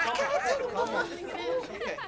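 Several voices at once, exclaiming and crying out over one another without clear words.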